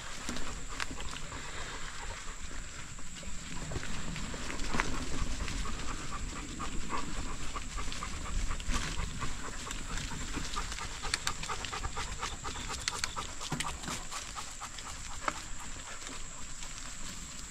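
A dog panting hard while running, over the rumble and scattered crackling of bicycle tyres rolling along a dirt trail, with a steady high-pitched tone underneath.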